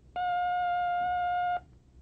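Steady electronic beep on a language-course audio tape: a single pitch held for about a second and a half, then cut off. It is the tape's signal tone, cueing the start of a pronunciation drill.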